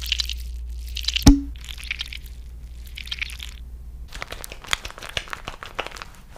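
A pump bottle of foaming cleanser dispensing in a few hissing squirts, with one sharp click about a second in. Then wet squelching and crackling of hands lathering the foam over the face.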